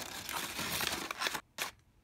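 Tissue paper crinkling and rustling as hands dig through it, stopping about a second and a half in, followed by one short click.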